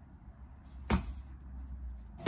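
A single sharp knock on brickwork about a second in, from work on the top of an old brick wall being demolished by hand.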